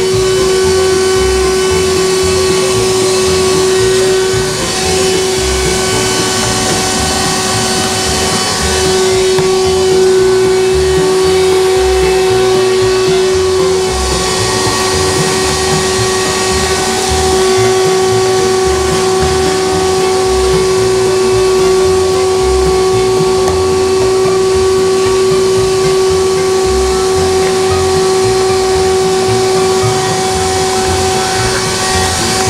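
Canister wet-and-dry vacuum cleaner running steadily with a strong whine, its hose nozzle sucking up drilling dust from aerated-concrete blocks along the base of a wall; the whine wavers briefly a few times as the nozzle moves.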